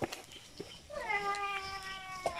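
An animal calling once: a long, drawn-out cry that starts about a second in, dips slightly in pitch and then holds nearly steady.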